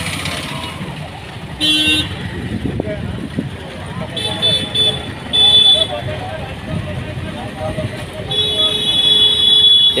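Busy street traffic with vehicle horns: a short honk about two seconds in, two more short honks around four to six seconds, and a longer held honk from about eight seconds on, over the steady noise of vehicles and voices.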